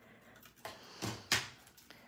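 Thin silver foil sheet crinkling as it is peeled up from a metal cutting die, with a few short crackles, the sharpest about two-thirds of the way in.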